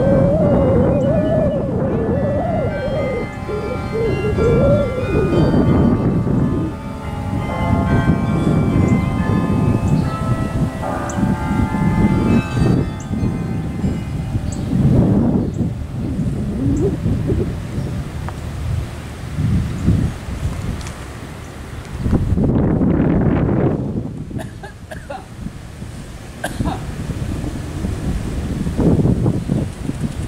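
Carillon bells of the Singing Tower ringing a tune, with strong wind rumbling on the microphone underneath; the bell tones thin out about halfway through, leaving mostly wind.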